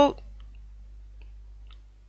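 A pause in a woman's speech, after the tail of a word at the very start: a faint steady low hum with a few soft, scattered clicks.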